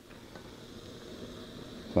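Upright canister gas stove burner running with a steady hiss.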